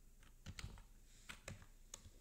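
Quiet computer keyboard typing: a handful of separate keystrokes at uneven spacing as a formula is entered.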